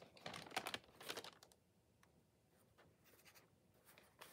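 Faint rustling of a large sheet of paper being handled and shifted, in a cluster of quick crackles in the first second and a half, with a few softer ones later.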